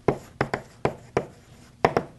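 Chalk writing on a blackboard: a quick run of sharp taps and short scrapes as letters are struck out, about seven strokes, some in close pairs.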